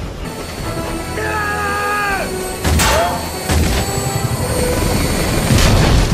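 Action-film battle soundtrack: orchestral music mixed with crashing impacts and explosions, with a loud crash about three seconds in and more hits near the end.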